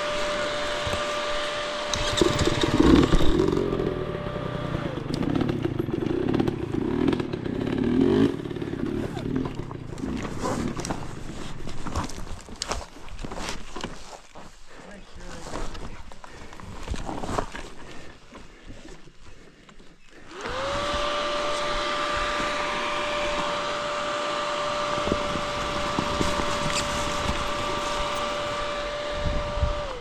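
Husqvarna 300 TE two-stroke single-cylinder dirt bike engine running at low speed on rocky singletrack. It revs in short uneven bursts over the first several seconds. Sharp clicks and knocks come through a quieter middle stretch, and a steady whine rises in about two-thirds of the way through and holds to the end.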